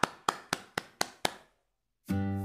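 One person clapping their hands, six claps at about four a second, stopping about a second and a half in.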